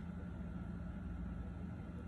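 Quiet room tone: a faint steady hiss and low hum, with no distinct sound events.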